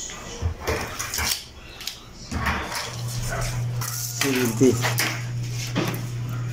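Light clinks and knocks of a steel tape measure handled against a stainless steel tandoor drum, over a steady low hum from about three seconds in. A short pitched call sounds a little after four seconds.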